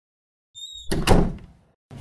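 Dark-panelled front door swung shut with one loud thud about a second in, just after a brief high squeak.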